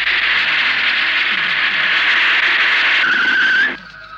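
Jeep's tyres screeching as it brakes hard: a long skid that ends in a rising squeal and cuts off suddenly.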